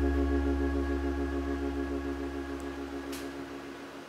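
The closing held organ chord of a karaoke backing track fading slowly away to nothing, with a faint click about three seconds in.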